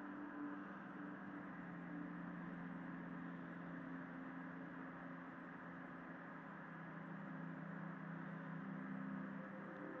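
Faint steady low drone: a couple of held low tones over a light hiss, shifting slightly in pitch about a second in, with no clicks or other events.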